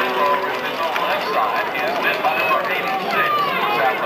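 Football stadium crowd of many voices shouting and cheering at once, reacting to a defensive stop on a running play.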